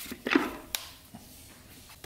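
A short knock and a sharp click of steel transmission parts as the fourth clutch drum is worked out of a 4L80E automatic transmission case.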